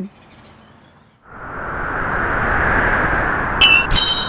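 A whoosh sound effect: a rush of noise swells up from about a second in and holds. A bright, bell-like ding comes in just before the end.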